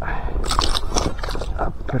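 Water splashing in a quick run of strokes as a small pike thrashes at the surface while held by hand, over a low steady rumble.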